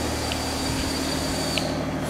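Steady mechanical hum and hiss of workshop background noise, with a few faint light ticks.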